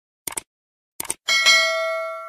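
Two quick double clicks of a mouse-click sound effect, then a bright bell chime about 1.3 s in that rings on and slowly fades; the chime is the loudest sound. This is the usual sound effect for clicking a subscribe button and its notification bell.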